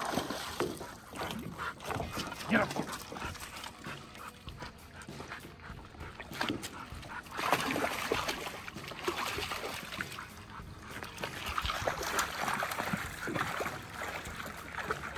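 A dog vocalizing excitedly as it wades in after a hooked fish, with water splashing in bursts as the fish thrashes at the landing net.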